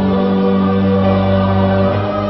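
Tamil film song soundtrack: a choir holds a long, steady chord over the music.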